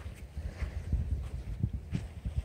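Footsteps walking on beach sand and pebbles: a run of soft, irregular low thumps, over a low rumble of wind on the microphone.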